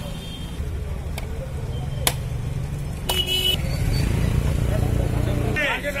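A motor vehicle's engine running close by, its rumble growing louder in the second half and cutting off just before the end, with a short horn beep about three seconds in. Two sharp knocks sound in the first half.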